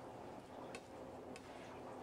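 Two faint, light clicks about half a second apart, from a slicing knife's blade against the cutting board as a thin slice of raw fish is pressed flat, over quiet room tone.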